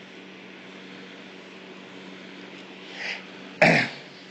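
A man gives one short throat-clearing cough near the end, just after a faint breath, over a steady low background hum.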